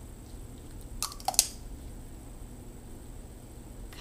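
Three short, wet smacks of lips pressed together and pulled apart to spread freshly applied lipstick, about a second in, the last one the loudest. A low steady room hum sits underneath.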